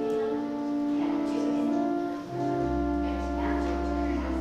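Church organ playing a slow prelude in long held chords that shift from one to the next, with a deep pedal bass note coming in about two-thirds of the way through.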